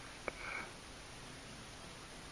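Faint room hiss with a single small click about a quarter second in, followed at once by a short breathy noise close to the microphone.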